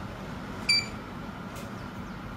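Focus wireless alarm control panel's keypad giving one short, high electronic beep as a key is pressed, about two-thirds of a second in.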